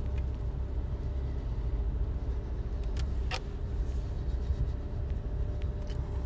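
Low, steady rumble of a car heard from inside the cabin while riding, with a faint steady hum above it and a couple of light clicks about three seconds in.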